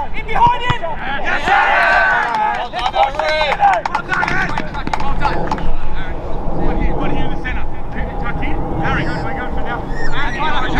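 Shouting voices of footballers calling to each other during play, over a steady low rumble.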